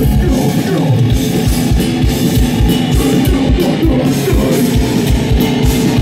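Live heavy metal band playing loud: distorted electric guitars and bass over a drum kit. About half a second in, the rapid kick-drum pattern gives way to a steadier, more spaced beat.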